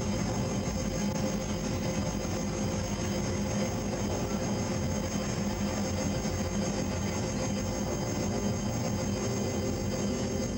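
Live electronic drone music: a dense, unchanging wall of noise with a low hum and a few held high tones underneath, no beat or rhythm.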